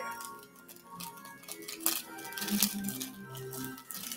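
Quiet background music, a slow line of single notes, with a few light crackles of candy packets and a plastic bag being handled.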